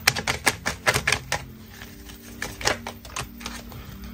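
A tarot deck being shuffled by hand: a quick run of sharp card clicks for about a second and a half, then a few scattered clicks.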